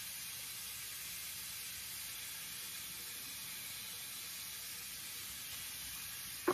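Bathroom faucet running steadily into the sink: a constant, even hiss of water.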